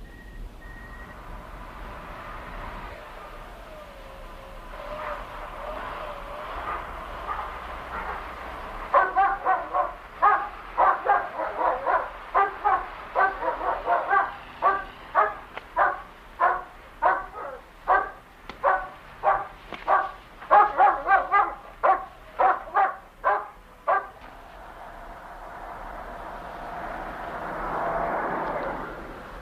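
A dog barking over and over, about two barks a second for some fifteen seconds, after a quieter stretch. Near the end a low rumble swells, as of a truck engine drawing near.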